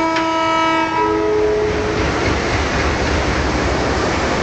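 Train horn sounding a chord of several steady tones that starts suddenly and fades out after about two seconds, with a sharp knock just after it begins. A steady rumble of rail noise follows.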